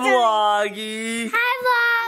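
Young children and adults singing out together in long, drawn-out held notes, a short break between phrases.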